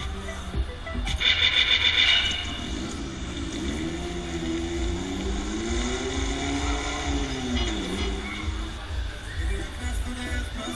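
Loud fairground ride music playing from the Predator ride's sound system while the ride swings. About a second in, riders give a brief loud scream. Through the middle, a long sliding tone rises and falls.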